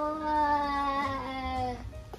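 A young child's long, wordless vocal sound: one held note that slowly falls in pitch and stops just before the end.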